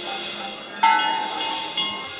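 Background music in which a metal bell is struck hard about a second in and rings on, with a lighter strike near the end, over a soft sustained backing.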